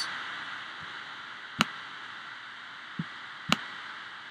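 Laptop cooling fan running with a steady hiss, broken by two sharp clicks, one about a second and a half in and one near the end, and a fainter tap between them.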